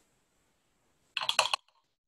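Near silence, then a brief rattle of a few light clicks about a second in, from brush or hand handling.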